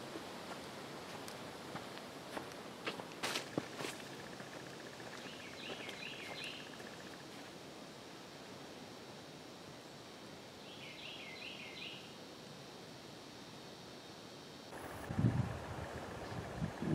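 Quiet woodland ambience with a steady hiss. A few crisp crunches of footsteps in dry leaf litter come in the first few seconds, and a bird calls twice, a short run of rapid chirps each time, about six and eleven seconds in. Louder rustling and bumps start just before the end.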